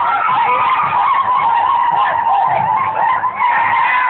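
Loud, continuous din of a dancing crowd: many overlapping high, wavering cries over a low, steady beat of about two pulses a second.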